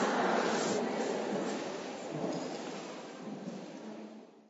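A steady rushing noise with no voice in it, fading out gradually.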